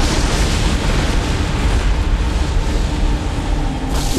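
Long, loud rumbling roar of a large explosion's blast wave, a dense rush of noise strongest in the deep lows, its hiss thinning out near the end.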